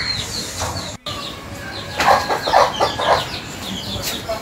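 Birds chirping in quick, short falling notes, with a few louder, lower calls a little after the middle.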